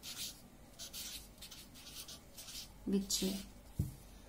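Felt-tip marker pen writing on paper: a series of short scratchy strokes as a word is written out by hand.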